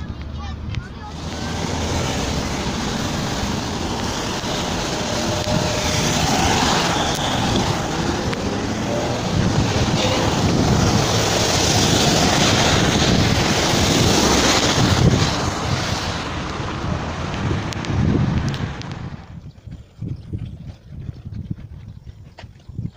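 Traffic on a wet road: a loud, steady rushing hiss of car tyres on wet asphalt. It drops away sharply about nineteen seconds in.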